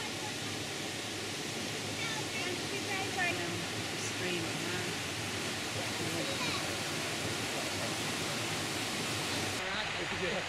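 Steady rushing of the Aira Force waterfall pouring through its rocky gorge beneath a stone bridge, with a few faint, brief calls or voices over it a few seconds in.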